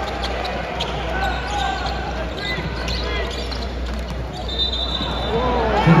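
Basketball arena crowd noise with spectators' chatter and the short sharp knocks of a ball bouncing on the hardwood court; about four and a half seconds in, a referee's whistle sounds once for about a second.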